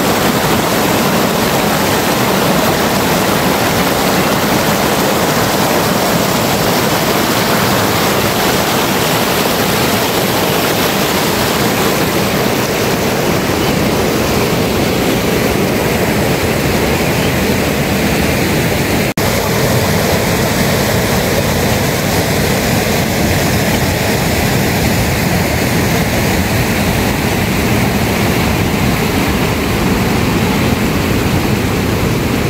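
Loud, steady rushing of a fast, rocky mountain stream. About two-thirds of the way in a brief dropout breaks it, and after that a similar unbroken rushing hiss carries on with more low rumble.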